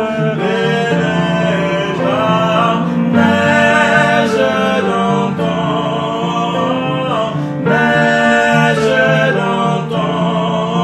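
A singer performing a French ballad to upright piano accompaniment, the voice holding long notes over steady piano chords.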